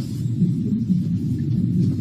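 Low, muffled rumble of room noise picked up by a phone's microphone in a meeting room, during a pause in speech, with nothing higher-pitched above it.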